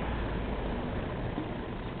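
Steady rumble and hiss of a moving vehicle's engine and road noise, heard from on board.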